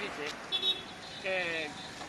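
Street traffic passing, with motor scooters going by, under a man's short bursts of speech.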